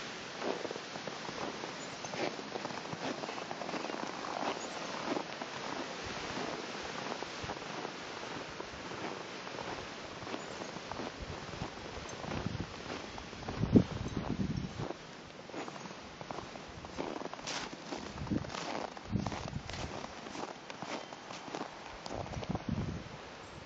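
Footsteps of boots fitted with ice cleats crunching irregularly on packed snow, over a steady rush of wind on the microphone. One heavier thump stands out a little past the middle.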